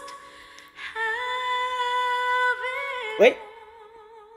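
A female vocalist holding a long sung note, then a sudden loud voice sweeping sharply up in pitch about three seconds in, followed by a softer held note with vibrato.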